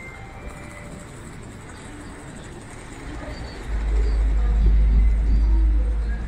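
Outdoor ambience of a busy city square, with distant traffic and people. From about four seconds in, a deep wind rumble on the microphone takes over and makes it much louder.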